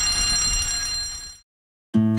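Fire alarm ringing, a steady high tone that fades out about a second and a half in.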